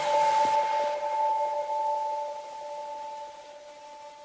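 A sustained two-note electronic chime: two steady pitches held together, slowly fading away.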